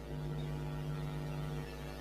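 Steady electrical mains hum with a stack of evenly spaced overtones, a buzz on the audio line with no other sound over it.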